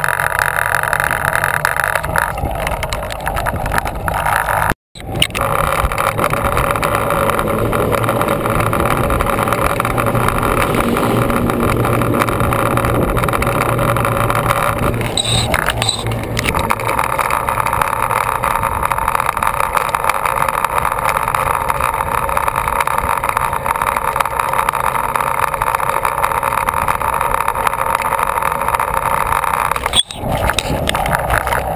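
Bicycle tyres rolling over a steel-grate bridge deck, a loud steady hum. It cuts out for an instant about five seconds in, and its tone changes slightly around the middle.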